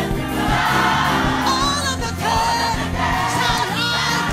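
Lively gospel music: a choir of voices singing over instrumental accompaniment with a steady beat.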